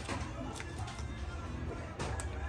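Scissors snipping through kite line wound on a spool: a few faint, short snips, the clearest about half a second in.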